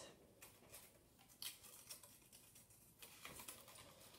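Near silence, with a few faint clicks and light rustles of a paper index card being handled on a wooden table.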